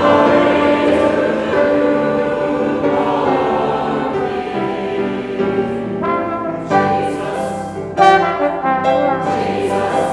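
Trombone and grand piano playing a hymn tune, with voices singing along; the piano chords come in more strongly in the second half.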